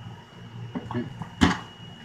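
A drawer of a metal Craftsman three-drawer toolbox pushed shut, ending in a single sharp metal clack about one and a half seconds in.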